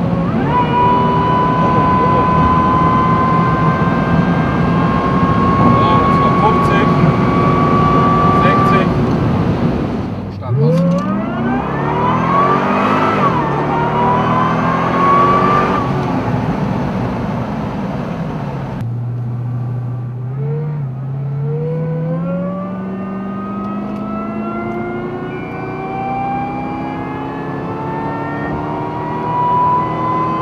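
Supercharged V8 of a Geiger-tuned Corvette C6, heard from inside the cabin at speed, pulling steadily with a high supercharger whine slowly rising in pitch. About ten seconds in the revs drop and sweep up and down through gear changes, settle low and steady for a few seconds, then climb again in one long acceleration with the whine rising toward the end.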